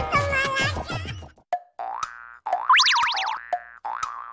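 Cartoon-style comedy sound effects: a run of quick falling boings over the first second or so, then a click, a short buzzy tone, a fast warbling whistle sliding up and down, and sharp wood-block ticks near the end.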